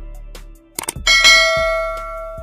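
Subscribe-button animation sound effect: two quick mouse clicks just before the middle, then a bright notification-bell ding that rings on and slowly fades. Soft background music continues underneath.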